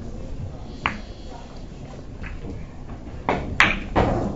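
Billiard shot on a carom table: a sharp click of the cue striking the ball a little under a second in, then near the end a quick cluster of louder, ringing clicks and knocks as the balls hit each other and the cushions.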